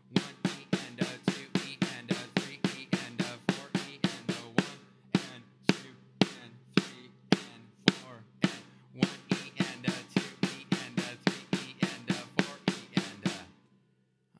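Drumsticks playing a steady rudiment exercise on a drum kit: alternating single strokes in eighth notes, then double strokes (right-right, left-left) in sixteenth notes, repeating. The strokes stop shortly before the end.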